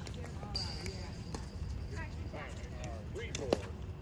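A few sharp knocks of a plastic pickleball striking paddle or court, spaced a second or more apart, the loudest about three and a half seconds in. Faint voices of players run between the knocks.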